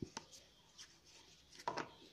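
Silicone pastry brush rubbing and dabbing oil inside a paper cup: soft scraping with a few faint taps, a sharp click at the start and a brief louder knock near the end.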